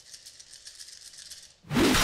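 A handful of about a dozen six-sided dice shaken in cupped hands, a fast rattle of small clicks. Near the end comes a short loud burst as they are thrown onto the table.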